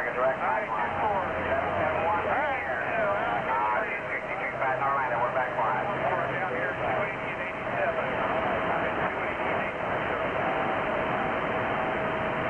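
A distant station's voice received over a two-way radio's speaker, narrow-band and buried in static so the words are hard to make out, with a steady whistle running under it.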